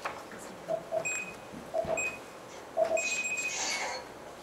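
Electronic beeping: a short signal repeats three times about a second apart, each time two low blips followed by a higher beep, the last beep held longer.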